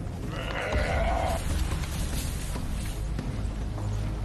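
Impala giving a bleating distress call, about a second long near the start, as African wild dogs seize it in the shallows, over splashing water and a low rumble.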